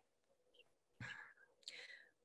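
Near silence, broken about a second in by a short mouth click and a faint breath, and by another faint breath near the end.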